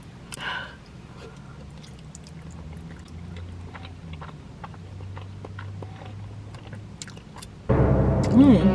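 A person chewing and slurping a mouthful of spaghetti, with small wet mouth clicks and smacks close to the microphone. Loud dramatic music cuts in suddenly just before the end.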